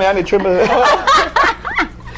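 People talking and laughing together.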